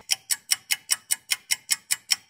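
Rapid clock-ticking sound effect: about five evenly spaced, sharp ticks a second, with no room sound between them.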